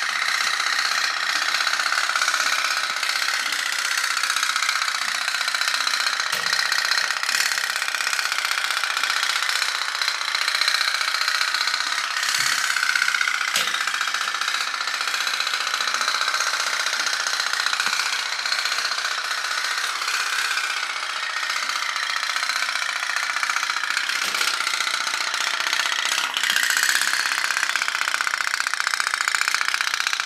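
Candle-heated pop-pop (putt-putt) toy steam boat running, its little boiler humming in a fast, steady putter as the heated water is pulsed out of the two stern tubes that drive it.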